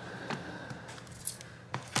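A few light clicks and taps as a tablet display panel and metal tweezers are handled and turned over on a work mat.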